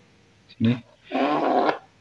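Mostly speech: a man says one short word, then a longer, noisier sound of just over half a second follows.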